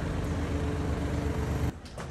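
A motor vehicle engine running steadily with a low throb and street noise. It cuts off abruptly near the end.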